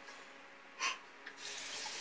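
Water from a tap running into a washbasin, with a short splash about a second in and the flow louder and steady from about halfway on.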